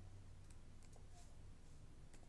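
A few faint clicks from a computer mouse and keyboard over low room tone.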